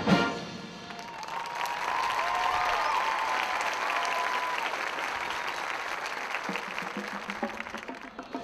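Marching band's ensemble hit at the very start, then the crowd in the stands applauding and cheering, with a wavering whistle-like cheer over it in the first few seconds; the applause fades toward the end.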